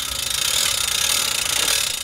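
Hand-crank winch of a tilting metal flux tower ratcheting with rapid, even clicks as it is cranked to lower the tower.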